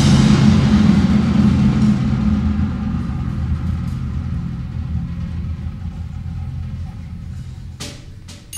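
Percussion ensemble's deep drum rumble, a low roll that fades slowly away after loud strikes. One sharp hit comes near the end.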